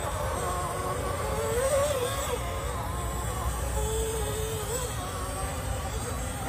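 Whine from a 1/10-scale RC rock crawler's brushless motor and geared drivetrain, rising and falling in pitch as the throttle is worked over the rocks, over a low rumble.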